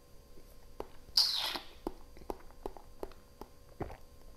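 A person tasting white wine: a short hissing slurp about a second in as the wine is drawn in with air, then a run of small wet mouth clicks as it is worked around the mouth.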